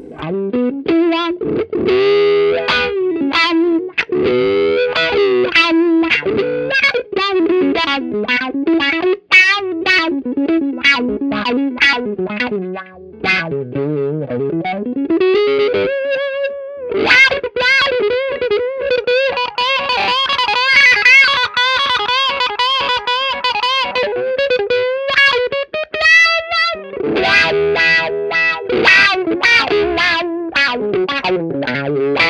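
Overdriven electric guitar, a Fender Stratocaster HSS through an Xotic XW-2 wah pedal into a Fender '65 Twin Reverb amp, playing picked notes and chords while the wah's resonant peak sweeps up and down as the pedal rocks. Past the middle, for about ten seconds, the wah is held still in one position, then the sweeping resumes near the end.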